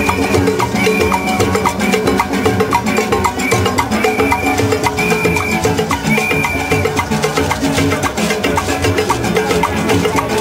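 Steelband music: steel pans playing a fast, rhythmic tune of short ringing notes over a steady clicking percussion beat, with brief high tones sounding several times over the top.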